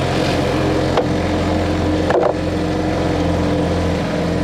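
Outboard motor running steadily, pushing the boat along under way, with a short click about a second in.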